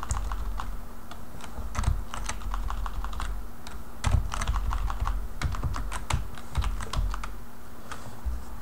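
Computer keyboard being typed on: irregular runs of keystroke clicks with short pauses between them.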